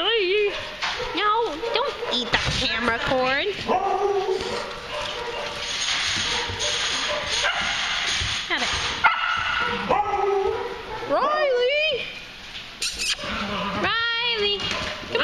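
Several dogs barking, yipping and whining, with high cries that rise and fall in pitch and come in short spells throughout.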